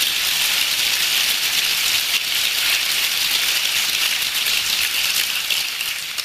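Audience applauding steadily, beginning to fade at the very end.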